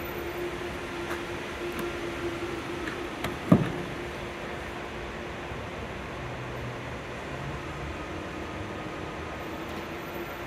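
Steady mechanical hum with a faint steady tone underneath. About three and a half seconds in there is one short thump as the Supercharger connector is pushed into the Tesla Model 3's charge port.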